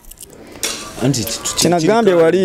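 A brief jingle of small metal pieces starting about half a second in, between bits of a man's speech.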